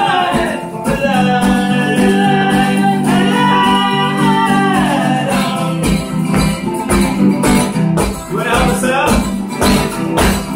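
A live acoustic folk song: a woman's voice singing over an acoustic guitar strummed in a steady rhythm. The singing comes in phrases with gaps between them.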